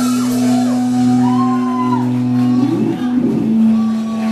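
A live rock band's electric guitar and bass hold one steady chord that rings on, with shouts and whoops from voices over it.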